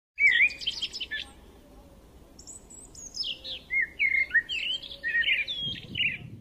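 Songbirds chirping and singing: a quick burst of song in the first second, then a run of varied chirps and whistles from about two and a half seconds on.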